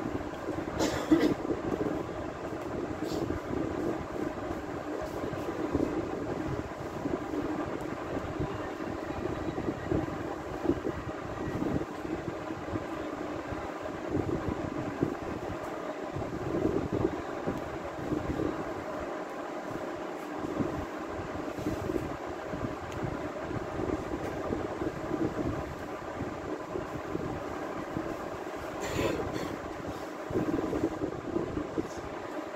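Steady background hum and rumble, with a faint click about a second in and another near the end.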